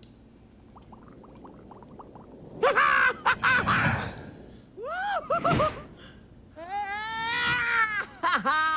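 A cartoon man's wordless, pitch-swooping yells, three of them, as he is shot along a pneumatic transport tube. A run of faint quick clicks comes before the first yell.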